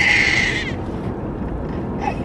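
Young baby crying in her car seat: one high wail in the first moment, then the low, steady road noise of the car's cabin.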